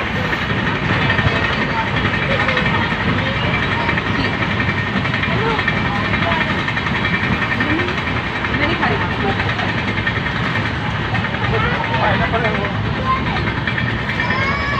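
Steady running noise of a moving passenger train heard from inside a coach: wheels on the rails and rushing air, with faint voices underneath.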